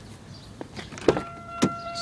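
Driver's door of a 1999 Pontiac Grand Am being opened: a few latch clicks and knocks, then a steady electronic warning tone comes on about a second in and keeps sounding, the car's door-open alert.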